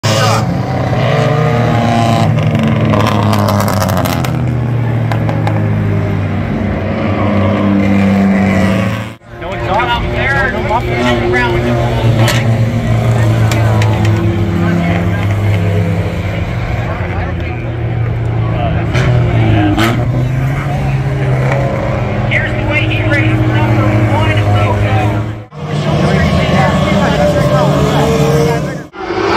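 Race car engines running hard on track, loud and sustained. The sound breaks off abruptly twice, with voices underneath.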